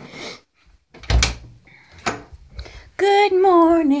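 An interior door thuds shut about a second in, with a lighter knock a second later. Near the end a woman starts singing.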